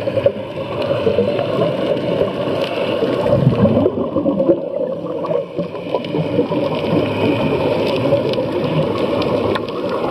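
Scuba divers' exhaled bubbles gurgling and rushing, heard underwater: a steady, dense bubbling with many small pops.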